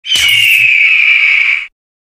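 Loud intro sound effect: a high whistling tone that slides slowly down in pitch over a hiss, with a low thud as it starts, cutting off suddenly after about a second and a half.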